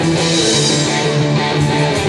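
Live band music with electric guitar, playing steadily.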